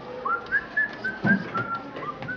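A person whistling a quick run of about six short notes, the first one sliding up in pitch.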